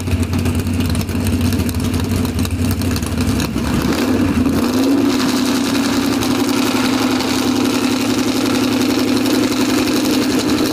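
Chrysler 440 big-block V8 with a cross-ram intake and a 760-lift cam, running on an engine stand. It starts at a choppy, uneven idle. About four seconds in, the revs rise smoothly to a higher, steady fast idle and stay there.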